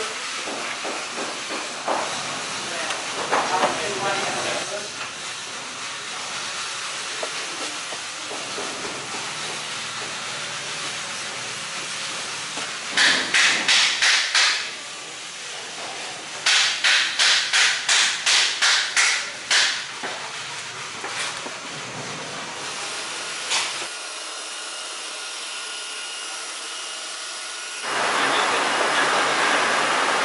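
A steel scraper drawn in quick strokes over a teak deck panel, taking off excess caulking from the seams: two runs of rapid scraping strokes over a steady background hiss. Near the end an electric sander starts up with a loud steady whir to sand the teak.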